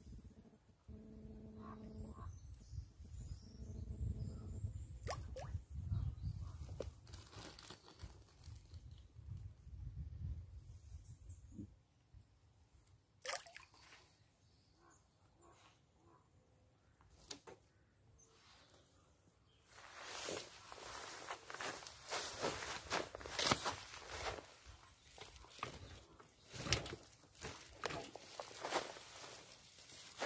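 A low rumble for the first dozen seconds, then a quiet stretch with a couple of sharp clicks, then dense crunching and rustling close to the microphone from about two-thirds of the way in, as of the recording device or gear being handled.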